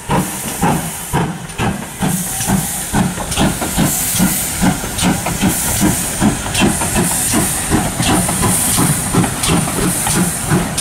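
Churchward 4200 class 2-8-0 tank engine No. 4270, a two-cylinder GWR steam locomotive, working a train as it approaches. Its exhaust beats come at about three a second and grow louder and quicker, with a rising hiss of steam from about halfway through.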